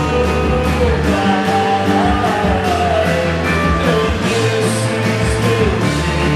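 A live rock band playing: electric guitars over a steady drum beat, a continuous full-band sound.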